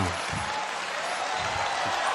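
Live audience applauding.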